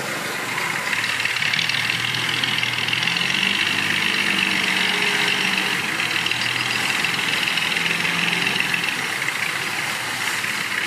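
Dump truck's diesel engine running steadily, its level rising about a second in and holding as the tipper bed is raised to dump its load of soil.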